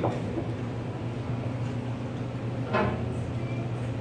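A steady low room hum with faint background sounds, and one brief sharp sound a little under three seconds in.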